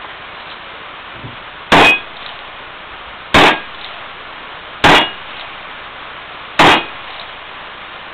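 Single-action revolver fired one-handed at steel targets: four shots about one and a half to two seconds apart, each followed by a brief metallic ring of the struck steel plate.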